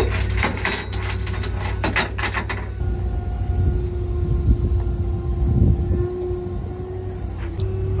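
Flatbed tow truck's engine running, a low steady drone with a steady whine over it. A steel tow chain clanks and rattles on the steel deck in the first few seconds.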